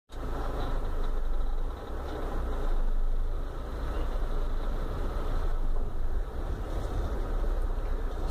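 Steady low rumble of a car's engine idling, heard from inside the cabin, with a brief dip in level about two seconds in.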